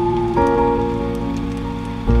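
Slow, chill piano music: held chords that change about a third of a second in, over a steady bed of rain sound.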